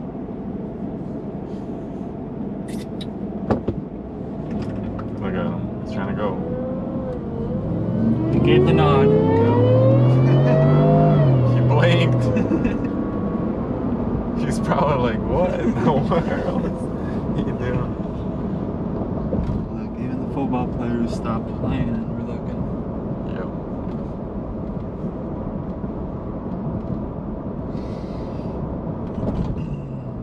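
Supercharged 5.0 L V8 of a 2021 Ford F-150, heard from inside the cab, pulling hard for about four seconds starting around eight seconds in: the engine note rises steadily in pitch, then drops off as the throttle lifts. Before and after, the truck cruises with a steady road and engine hum.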